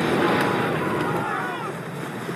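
Hot-air balloon's propane burner firing, a steady rushing noise that eases near the end, with men's voices shouting over it.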